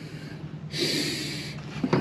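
A man's short, sharp breath through the nose close to the microphone, a hissy rush lasting under a second.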